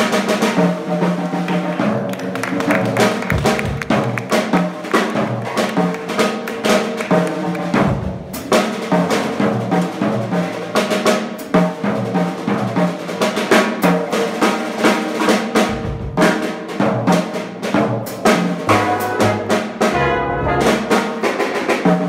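Live jazz band playing an instrumental passage without vocals, with busy snare-drum work on the drum kit standing out over sustained piano, bass and horn notes.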